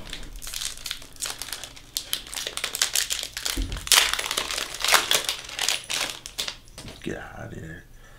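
Foil wrapper of a 2021 Donruss baseball card pack crinkling as it is opened by hand, in rapid irregular crackles that die down about a second before the end.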